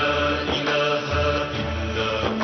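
Television programme theme music with long held notes over a low pulsing line.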